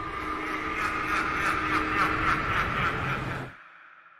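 A trailer soundtrack swell: a sustained sound with a steady low tone that builds to its loudest about two seconds in, then cuts off sharply about three and a half seconds in, leaving only a faint tail as the title card appears.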